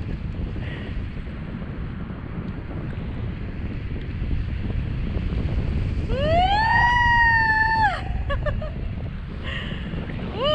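Wind buffeting the microphone during flight, with a long, high-pitched vocal yell about six seconds in that rises, holds for about two seconds and then drops away, followed by a few short voice sounds.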